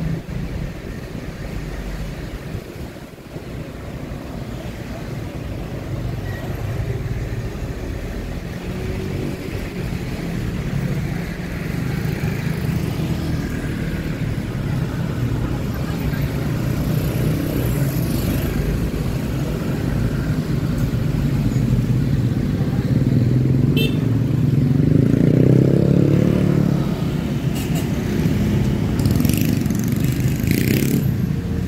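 Road traffic heard from a vehicle driving through narrow city streets: a steady engine hum and road rumble, with motorcycles passing. Toward the end the engine note rises and grows louder as the vehicle speeds up.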